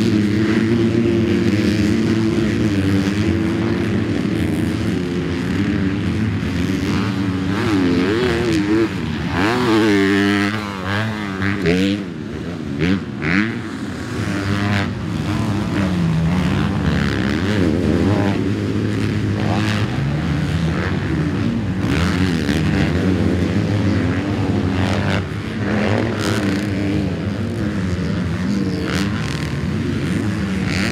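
Several motocross race bikes running on the track, their engines revving up and down through the gears. Around ten seconds in, bikes pass close by, with a quick rise and fall in pitch.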